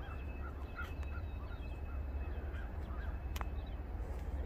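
Birds chirping in short, repeated calls over a steady low rumble, with one sharp click about three and a half seconds in.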